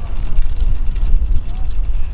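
Loud, steady low rumble of a fishing boat under way while trolling, with faint voices over it.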